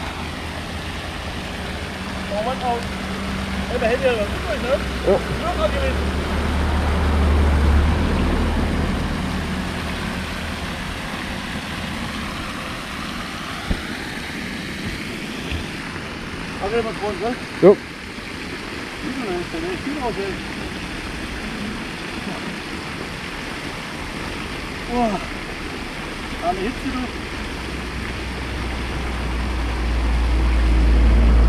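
A small camera drone in flight: a steady rushing of propeller noise and wind on its microphone, swelling to a heavier low rumble a few seconds in and again at the end, with faint distant voices or chirps now and then.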